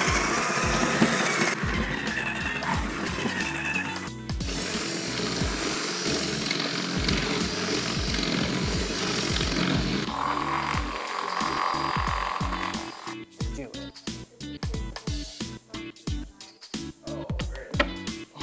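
Cordless drill running as it bores a hole through an acrylic terrarium lid, stopping about thirteen seconds in, over background music with a steady beat.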